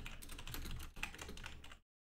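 Fast typing on a computer keyboard: a quick run of key clicks that stops abruptly just before the end.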